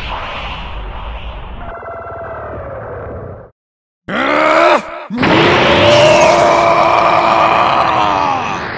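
Fight sound effects: a rumbling energy clash for about three and a half seconds, then a sudden half-second of silence. A man's voice then gives a short yell and goes into a long, steady power-up scream.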